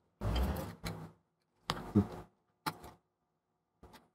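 Handling noise from small repair hand tools: four short knocks and scrapes, irregularly spaced, the first and longest with a dull low bump. It fits tools being set down and picked up while a small ribbon-cable connector is freed from a laptop logic board.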